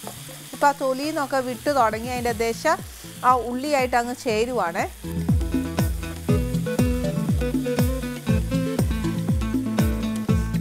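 Chopped onions and tomatoes sizzling in a frying pan while a spatula stirs them. Background music runs under it, and a steady beat comes in about halfway through.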